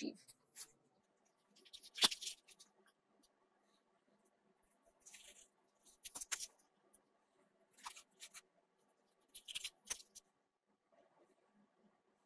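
Red cabbage leaves being ripped apart by hand: short, crisp tearing and crackling sounds, about five of them a second or two apart.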